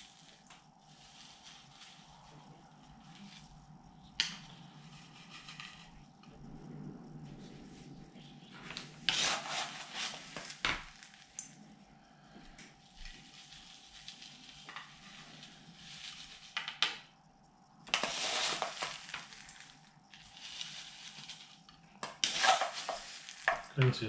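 Gritty bonsai soil mix being scooped from a bowl with a plastic scoop and poured into a bonsai pot around the roots: a dry, grainy rustle and trickle, louder in separate pours about nine seconds in, around eighteen seconds, and again near the end.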